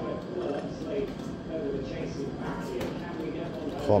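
Indistinct background voices mixed with the electronic tones of a fruit machine spinning its reels on autoplay.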